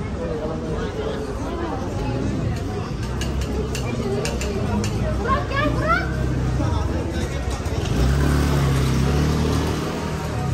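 Busy street ambience: passers-by talking in the background, with a motor vehicle's engine hum that grows louder over the last couple of seconds.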